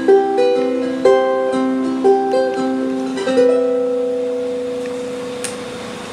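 Ukulele fingerpicked in a small room, a run of single plucked notes about two a second, ending about three seconds in on a last note that rings on and slowly fades.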